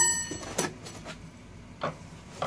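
Metal rods of a 3D printer kit clinking together as they are lifted from foam packing, with a sharp strike and brief ringing at the start. This is followed by two softer short knocks of handling.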